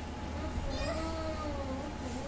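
A faint, drawn-out voice that wavers slowly up and down in pitch, with a brief higher cry a little under a second in.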